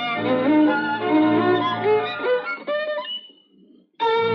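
Violin playing a classical piece over a sustained low accompaniment. The playing stops, with a short final chord about three seconds in and a fading note, then a brief near-silent pause.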